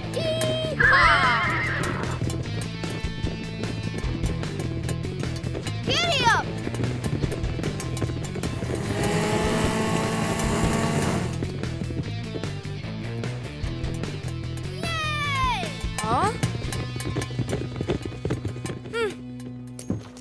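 Cartoon soundtrack: steady background music with short gliding vocal sound effects several times, and a two-second noisy sound effect with rising tones about halfway through.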